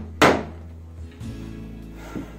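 A claw hammer strikes once on tongue-and-groove timber boarding shortly after the start, followed by soft background music.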